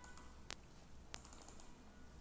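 Three faint computer mouse clicks over near-silent room tone.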